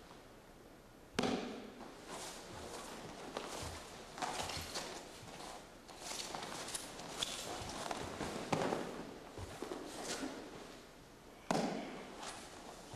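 Aikido partner taken down onto a training mat and pinned: a sharp thud about a second in as he lands, then scattered knocks and slaps of hands, knees and feet on the mat with rustling uniforms, with another sharp impact near nine seconds.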